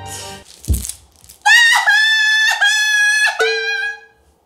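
Edited reveal sound effect for a lottery draw result. A short whoosh and a low falling boom come first, then about a second and a half in a high-pitched four-note jingle plays, its last note lower.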